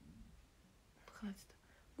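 A woman whispering very quietly to herself, with one short murmur about a second in; otherwise near silence.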